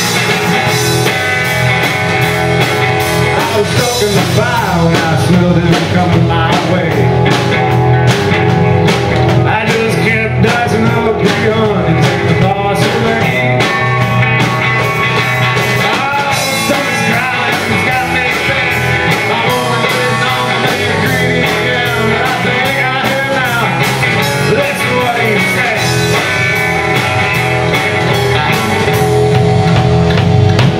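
Live rock band playing: electric guitar, bass guitar and drum kit, with a male lead singer singing over them.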